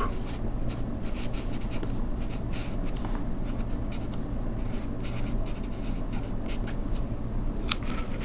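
Sharpie felt-tip marker writing on paper: a quick run of short scratchy strokes as words are written out, with a steady low hum underneath.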